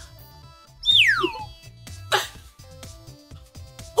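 Light background music with two sound effects: a quick falling whistle-like glide about a second in, and a short whoosh about two seconds in.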